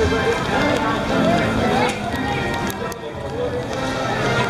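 A person's voice over background music.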